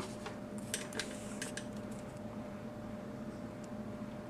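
Faint clicks and light handling noise from a plastic action figure held in the fingers, over a steady low hum.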